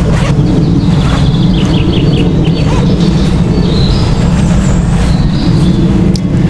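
A steady low rumble fills the background, with a bird chirping in a quick run of notes from about one to three seconds in.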